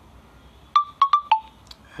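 Four short electronic pips in quick succession from a phone's touchscreen keyboard, the last one lower in pitch, followed by a faint click.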